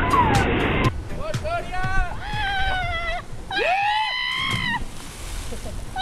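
Young people whooping and yelling at a jump into water: a string of short high shouts, then one long rising-and-falling yell a little before the end. Water splashes as someone lands in the pool.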